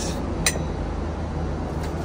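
Steady low cabin drone of a Boeing 777 in flight, with a single sharp click about half a second in.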